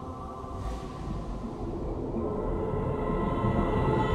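Ambient music of the deep ocean: sustained held tones over a deep underwater rumble, swelling steadily louder.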